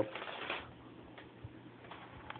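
A brief rustle, then a few faint light ticks and taps as a live feeder mouse moves about on the plastic floor of a snake's tub.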